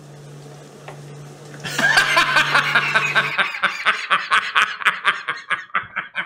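Two men burst into loud laughter about two seconds in, a rapid run of laughs at about four or five a second that keeps going.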